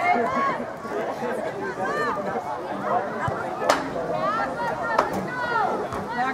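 Overlapping indistinct voices of spectators and players chattering and calling out across the soccer field. Two sharp knocks cut through, about halfway and about five seconds in.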